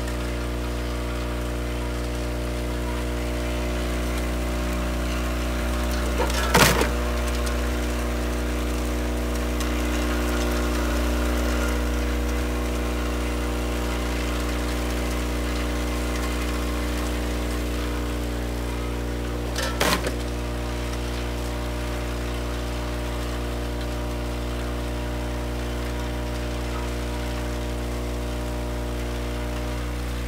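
Batchmaster IV five-gate counting machine running: its vibratory bowl feeder gives a steady hum with a continuous pattering rattle of wrapped chocolate candies on steel. Two sharp clatters break in, about 6 seconds in and again near 20 seconds.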